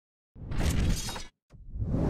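Sound effects for an animated channel-logo intro: a burst of noise about a second long, then a second one swelling up near the end.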